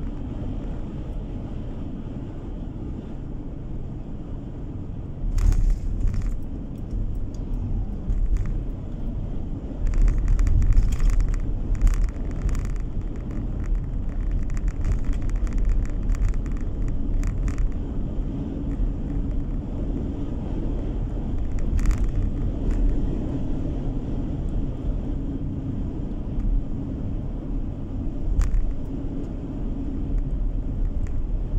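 Car driving on an open road, heard from inside the cabin: a steady low rumble of tyres and engine. Several brief louder bursts of noise come through, around six seconds in, from about ten to thirteen seconds in, and at about twenty-two seconds in.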